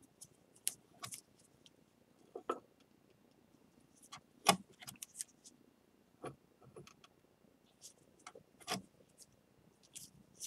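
A small pointed metal tool scraping and tapping on a glazed ceramic bowl along its glued cracks, in faint, irregular little scratches and clicks, the loudest about four and a half seconds in.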